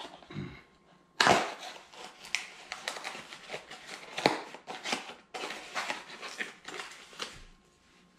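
Shipping packaging being torn open and crinkled by hand: a sharp rip about a second in, then a run of crackling tears and rustles that dies down near the end.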